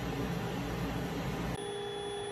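Steady machinery noise, an even hiss over a low hum, that gives way suddenly about one and a half seconds in to a quieter electrical hum with a thin high steady tone.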